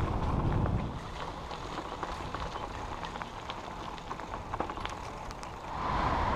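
Bicycle rolling along a gravel track: a steady low rumble of tyres and wind with many small scattered clicks and rattles from grit and the bike. The rumble is heaviest in the first second, and the sound grows louder again near the end.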